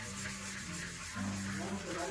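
Sponge scrubbing a soapy stainless steel sink basin: a continuous rubbing scrub. Short low steady tones sound faintly underneath.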